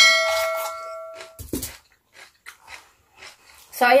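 A bell-like notification ding sound effect rings out and fades over about a second and a half. It is followed by crunching as a raw bell pepper and cucumber sticks are bitten and chewed.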